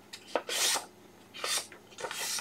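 Printed paper sheets rustling and sliding against each other as they are handled and folded in half, in two short scraping bursts with a few small clicks.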